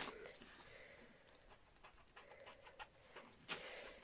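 Near silence: room tone with faint rustling and a few light ticks.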